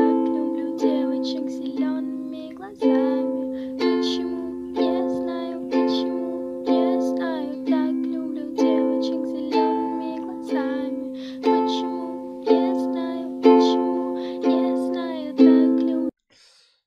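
Ukulele strumming chords, one strum about every second, each ringing out and fading before the next.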